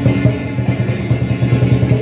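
Temple-procession percussion: a drum beaten in a fast, steady rhythm of about five strokes a second, with bright metallic clashes of cymbals on the beats.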